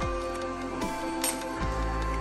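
Background electronic music: held synth notes over deep bass hits that drop in pitch, repeating at a steady beat.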